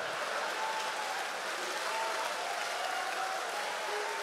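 A congregation applauding steadily, with a few faint held tones underneath.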